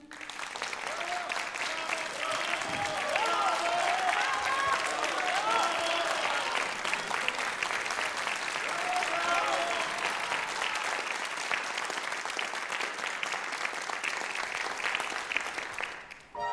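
Audience applauding at the end of a song, dense steady clapping, with a few voices heard over it in the first half.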